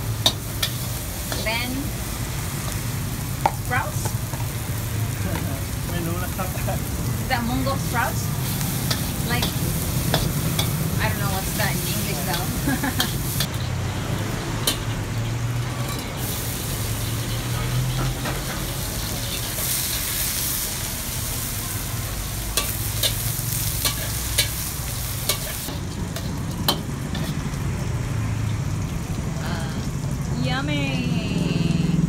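Metal spatula scraping and clanking against a carbon-steel wok as pad thai noodles are stir-fried, with steady sizzling of oil. Sharp clicks of metal on metal come every second or two through the frying noise.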